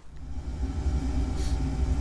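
A low, steady rumble that builds over the first half second, with a faint hum above it.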